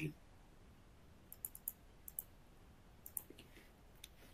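Faint computer clicks in a few short clusters over quiet room tone, coming as the presentation slide is advanced.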